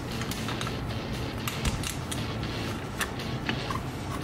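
Sharp metallic clicks and creaks of pliers gripping and working the spring clip that holds a brake shoe on a drum-brake backing plate, over steady background music.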